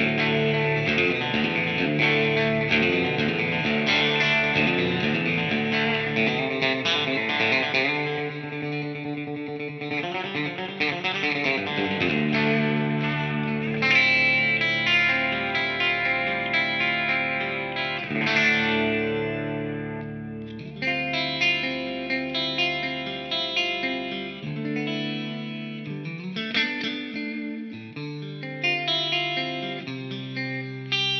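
A solo Fender American Professional II Telecaster electric guitar is played with a pick through an amplifier. For the first several seconds it plays busy chords, then a warbling passage, then slower chords that ring out and fade between changes.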